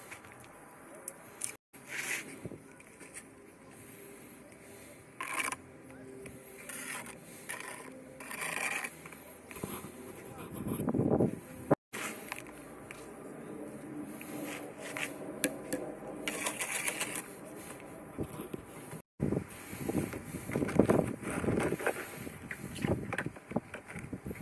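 Bricklaying work: a steel trowel scraping and slapping mortar, and dense concrete blocks being handled and set, heard as irregular scrapes and knocks. The sound drops out completely three times for an instant.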